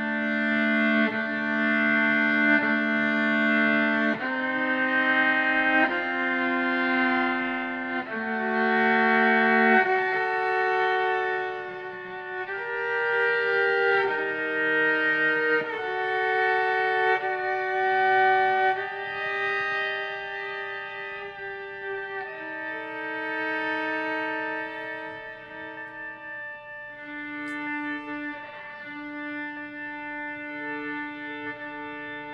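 Violin playing a slow melody of long, held bowed notes that step from pitch to pitch. It grows quieter over the second half.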